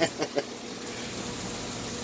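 Steady rush and bubbling of aquarium water circulation, with a faint hum beneath it.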